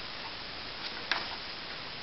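Steady background hiss with one short, sharp click just past the middle and a fainter tick just before it, the light sounds of a paperback workbook being handled.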